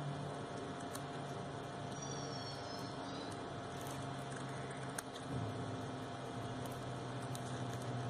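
Scissors snipping crepe paper, faintly: a few soft clicks and brief blade scrapes as scallops are cut, over a steady low hum.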